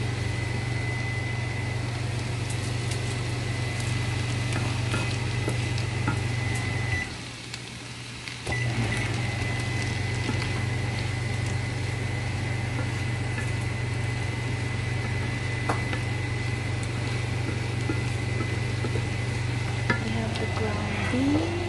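A steady machine hum with a thin high whine, typical of a kitchen appliance such as a vent fan running. It drops out for a second or so about seven seconds in, then resumes. Faint scrapes and clicks of a wooden spatula stirring diced vegetables in a nonstick frying pan sit underneath.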